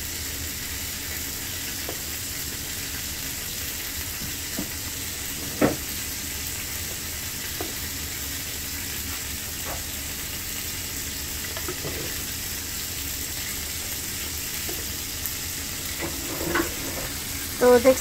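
A serving spoon knocking and scraping against a cooking pot and a ceramic serving dish now and then as thick spinach-and-potato curry is spooned out, with the loudest knock about five seconds in. A steady hiss runs underneath.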